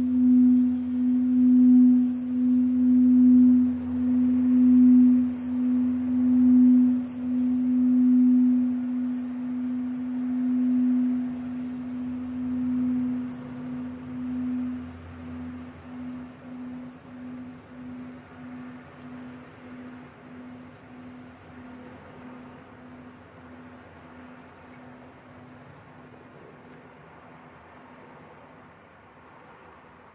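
A Tibetan singing bowl's low tone ringing out and slowly dying away, pulsing in a slow wobble as it fades. Japanese bell crickets sing steadily under it throughout.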